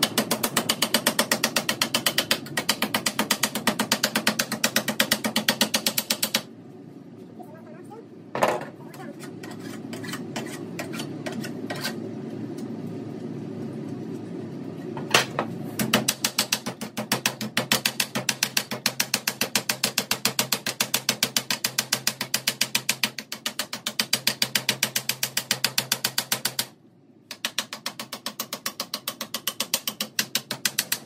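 Hammer rapidly tapping a folded sheet-steel edge flat on a workbench, sharp metallic blows about four to five a second in two long runs, with a pause in the middle broken by a couple of single knocks.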